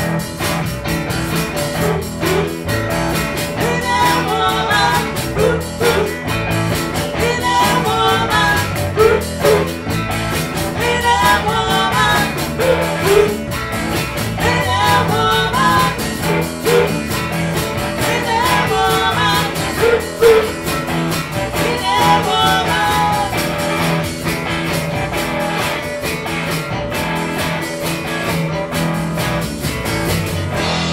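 Live rock band playing: electric guitars, bass and drums in a dense steady groove, with a lead vocal in short phrases repeating about every two seconds through the middle of the song, then the vocal drops out near the end while the band plays on.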